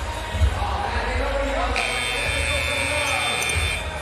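Arena buzzer sounding one steady tone for about two seconds, starting near the middle, over arena music with a thudding bass and crowd noise. It marks the end of a timeout as play resumes.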